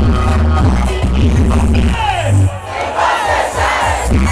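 Aparelhagem sound system playing loud dance music with heavy bass and a cheering crowd; about halfway the bass drops out with a falling swoop, followed by a burst of swooping rising and falling effect sounds over crowd noise.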